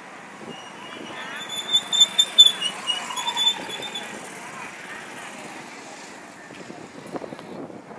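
Busy street ambience: background crowd voices and a motorcycle passing, with a rapid run of high-pitched ringing beeps from about one and a half to four seconds in.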